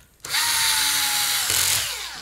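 Cordless electric screwdriver driving a screw into the plastic RC car chassis. The motor whirs for about a second and a half, its pitch dropping slightly, then winds down near the end.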